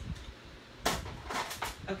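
Sharp plastic click about a second in, then a few lighter clicks and a short scrape: a paper trimmer's scoring blade being set and drawn down along its track across cardstock.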